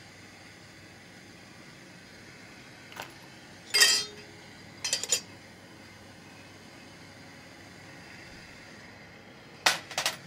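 Freshly annealed brass cartridge cases dropping from the annealer's wheel into an aluminium pan: a faint metallic clink about three seconds in, a louder ringing one a second later, a quick double clink around five seconds and another loud one near the end. Under them runs the faint steady hiss of the gas torch flame.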